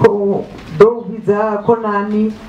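A woman's voice singing into a microphone, slow and unaccompanied, with notes held steady and sliding between pitches.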